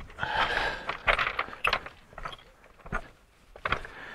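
Footsteps on loose scree: boots crunching and stones clinking and shifting underfoot, with a few separate sharp knocks of rock on rock.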